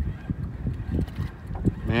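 Wind buffeting the microphone in low, uneven rumbles, with a few soft knocks.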